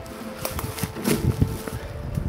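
Irregular rustling and crackling of dry leaves and twigs on the forest floor as someone shifts and bends down, with scattered small snaps and knocks.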